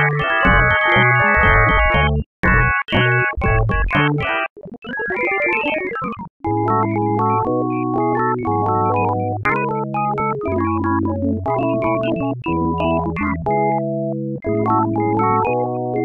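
Audio-to-MIDI rendition of an anime pop song played back as synthesized keyboard notes, so many stacked at once that the original song seems to be heard. The notes are dense and busy for the first four seconds or so, then break off briefly about six seconds in. After that they thin to held bass notes and chords.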